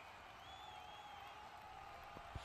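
Near silence: faint ground ambience, with a faint high wavering whistle-like tone for under a second near the middle.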